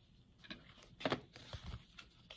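Paper instruction cards being slid out of a paper envelope and handled, a few short soft rustles, the loudest about a second in.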